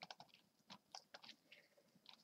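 Faint, irregular computer mouse clicks, a dozen or so quick ones in two seconds, as chess pieces are moved in a fast online game.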